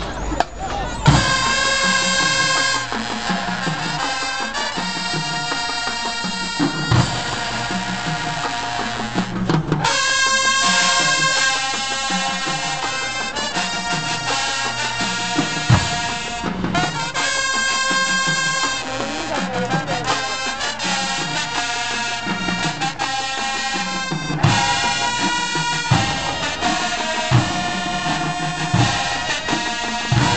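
Marching band playing, brass and sousaphones over drums, starting about a second in with a repeating bass line and two brief breaks.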